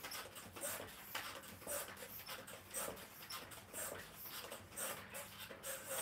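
Mini stepper working under steady stepping: a creak or squeak from the pedals and pistons on each stroke, about two strokes a second.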